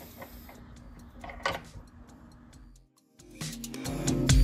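Faint clicks and handling noise as a record clamp is fitted onto the platter of a vacuum record-cleaning machine. After a brief drop to silence about three seconds in, background music comes in near the end.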